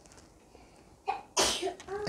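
A pause, then a man's single short, sharp breathy vocal burst about one and a half seconds in.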